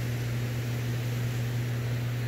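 Steady rushing of fast-flowing water discharged below a hydroelectric dam, under a constant low hum.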